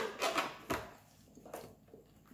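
King crab leg shell being cracked and broken apart by hand: a series of sharp cracks and crunches, the loudest right at the start and a cluster within the first second, with a few smaller ones near the end.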